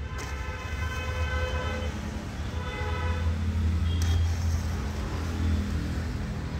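A vehicle horn sounding twice, a long steady toot and then a shorter one, over the low rumble of a passing motor vehicle that grows louder after the horn.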